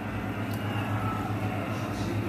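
Batter frying in hot oil in a kadai: a light, steady sizzle over a low steady hum, with a faint click about half a second in.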